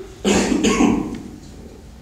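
A man coughing twice in quick succession, loud and close to the microphone, near the start.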